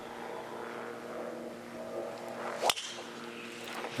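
A golf tee shot: a brief swish of the swing rising into one sharp crack of the club head striking the ball, about two and a half seconds in, over a low steady hum.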